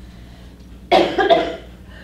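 A person coughing, two quick coughs about a second in.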